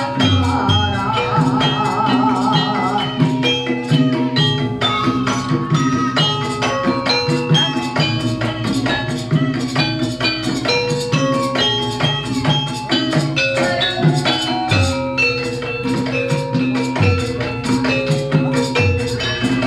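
Javanese gamelan playing ebeg dance music: bronze metallophones struck in quick repeated notes over sustained low tones, with a few low drum or gong strokes near the start and near the end.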